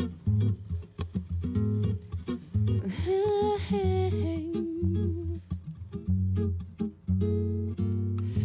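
Acoustic guitar playing a song's introduction: fingerpicked notes over a repeating bass line. About three seconds in, a wordless hummed vocal note is held for roughly two seconds.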